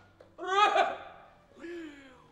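A man's voice letting out two short vocal outbursts without clear words. The first and louder one comes about half a second in, and a weaker one near the end.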